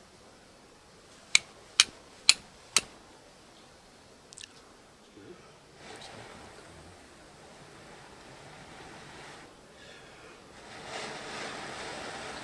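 Flint struck against a steel striker four times in quick succession, about two sharp clicks a second, throwing sparks onto char cloth. Near the end, a soft rushing breath as the smouldering tinder is blown into flame.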